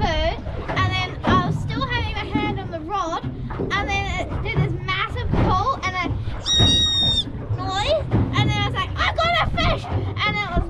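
High-pitched children's voices, excited vocalising and chatter with no clear words. About six and a half seconds in there is one long, high, steady squeal.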